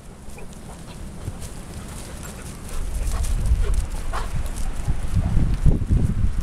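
A dog gives a short, high yelp a little after four seconds in. Under it, a low rumble of wind on the microphone grows louder partway through, with small scattered clicks.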